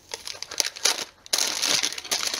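Thin plastic wrapping crinkling as a packaged wax melt is pulled open by hand, with a short pause about a second in before denser crinkling.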